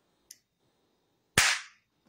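A single sharp smack from the hands, about one and a half seconds in, after a faint click near the start.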